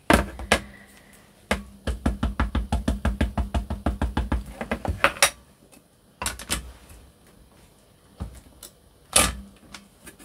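Ink pad dabbed rapidly onto clear stamps on an acrylic stamping lid, a quick even run of about eight light taps a second lasting nearly four seconds. Then a few single knocks as the acrylic lid is set back on the rotating stamp platform and pressed down.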